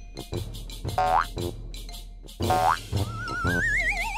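Cartoon background music with a steady beat, over which two springy boing sound effects sweep upward, about a second in and again midway. Near the end a wavering whistle rises in pitch.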